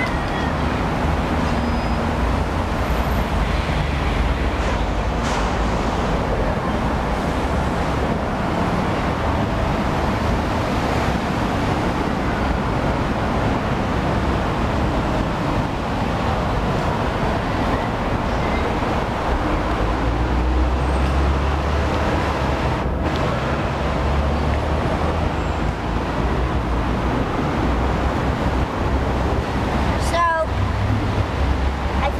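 Steady outdoor city background noise with a heavy low rumble, like traffic or wind on the microphone.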